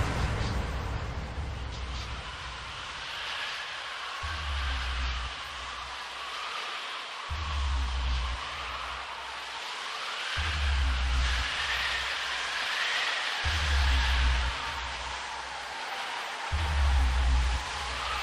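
Quiet electronic music intro: a deep bass note pulsing about every three seconds under a soft, wavering synth line.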